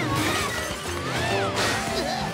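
Dishes and cups crashing to the floor and shattering, with a second crash about a second and a half in, over lively cartoon music with sliding tones.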